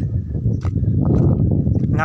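Footsteps on a gravelly dirt track, a few short crunches. Under them runs a steady low rumble of wind on the microphone.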